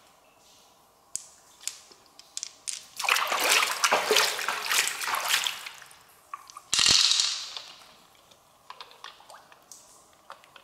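Water splashed by hand over an opened freshwater mussel: a few seconds of splashing, then one sharp splash about seven seconds in. Small wet clicks of shell and flesh being handled come before and after.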